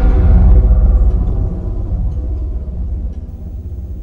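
Deep low rumble with faint held tones from a horror film's background score, dying away gradually.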